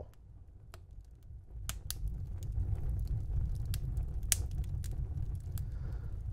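Crackling log fire: a low, steady rumble of flames that comes up after about a second and a half, with a few sparse, sharp pops.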